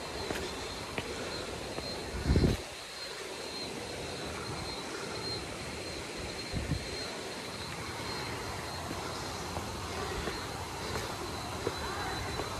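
Steady rushing water of a waterfall and its pool. About two seconds in, a short, loud, low rumble of wind or handling on the microphone; a smaller one follows near the middle.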